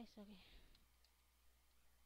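Near silence after a brief spoken "eh", with a few faint clicks.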